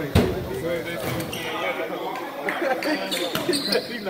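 Basketball game in an echoing gym: spectators' voices throughout, one loud sharp thump just after the start, and a basketball bouncing on the hardwood court.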